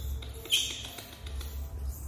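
Baby macaque monkey giving a short, high-pitched squeak about half a second in, dropping slightly in pitch, with a fainter squeak at the start.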